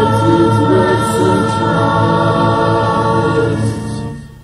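Church choir singing a gospel hymn, holding one long chord at the end of a chorus line that dies away at the end.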